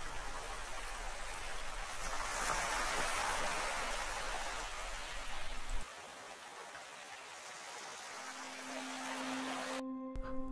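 Shallow water lapping and trickling over shells and pebbles at the tide line: a soft, even wash. Near the end a steady, held musical tone comes in.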